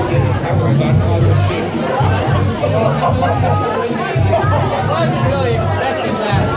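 Several people talking over one another close by, with loud background music with a pulsing bass beat underneath.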